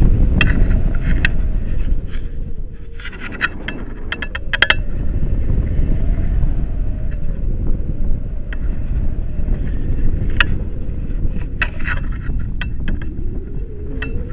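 Wind buffeting the microphone, a heavy rumbling rush that swells and eases, with scattered light clicks and rattles.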